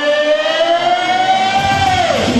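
A male singer holds one long high note through a hall's PA, sliding slowly upward in pitch and then falling off at the very end.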